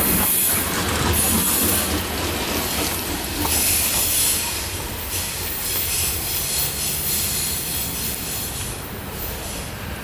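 Steel wheels of the last loaded coal hopper cars rumbling past on the rails with a high-pitched wheel squeal, the sound dying away steadily as the end of the train rolls off around the curve.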